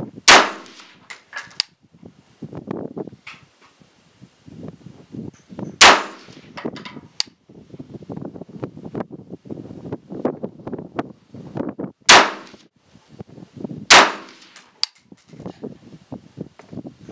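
Sig Sauer 516 gas-piston rifle in 5.56 firing four single shots in slow aimed fire, each a sharp, very loud crack with a short ringing tail; the last two come about two seconds apart. Lighter metallic clinks and handling clatter fill the gaps between shots.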